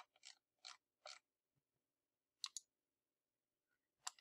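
Near silence with a few soft computer mouse clicks in the first second, then a sharper press-and-release click pair about halfway through.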